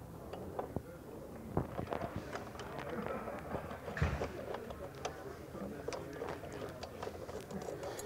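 Hand screwdriver backing small screws out of a panic device's metal head cover: faint, scattered metallic clicks and ticks, with one louder knock about four seconds in.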